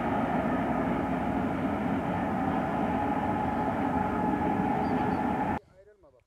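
Freight train running along the track: a loud, steady, dense rumble with faint steady tones through it. It starts suddenly and cuts off abruptly about five and a half seconds in.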